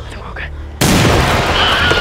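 Gunfire breaks out suddenly, loud and continuous, a little under a second in, after a quieter moment.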